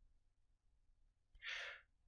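Near silence, then a narrator's short breath in, about a second and a half in.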